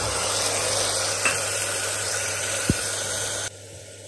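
Wet ground masala paste sizzling loudly as it hits hot mustard oil and onions in a pressure cooker, with two light clicks from the spoon scraping it in. The sizzle cuts off suddenly about three and a half seconds in.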